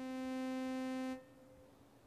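A synthesizer note with a long attack. It swells in gradually, holds steady for about a second, then cuts off abruptly when the key is released, since no release is set. A second note begins swelling in near the end. The tone is buzzy and full of overtones, like a sawtooth wave.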